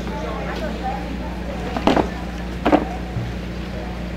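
Steady low electrical hum from an outdoor public-address system under faint, low voices, with two short, loud bursts about two and two-and-three-quarter seconds in.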